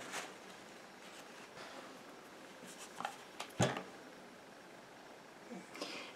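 Quiet handling of a box of pH test strips on a paper-towel-covered table: faint rustling and a few light clicks, with one sharper knock about three and a half seconds in.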